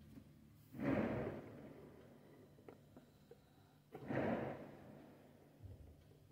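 Two fireworks bangs, one about a second in and another about four seconds in, each starting suddenly and dying away over about half a second. A few faint clicks come between them.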